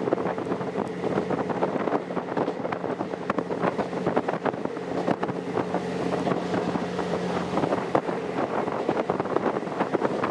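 Twilight Express Mizukaze diesel train heard from its open rear observation deck: wind rushing over the microphone, a steady engine drone, and a rapid, irregular clatter of wheels over rail joints and points.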